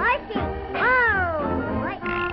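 Cartoon music score with a wailing cry-like sound over it: one long note near the middle that rises and then slides down, with shorter sliding notes before it.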